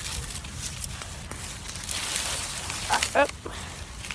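Wind and handling rumble on a handheld phone microphone while walking, with scattered rustles and clicks, and one short voice-like sound about three seconds in.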